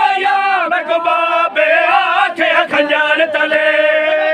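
Men chanting a Punjabi devotional refrain together in a steady melodic line, with sharp hand strikes cutting through it every second or so.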